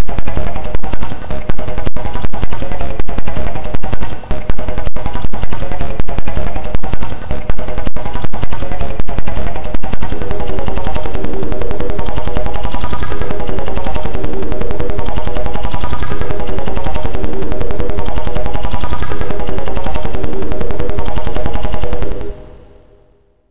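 Loud, distorted YTPMV remix: audio from a TV channel's continuity clip, layered in many pitch-shifted copies into music. For about ten seconds it stutters with rapid chopped cuts, then settles into stacked, repeating pitched chords.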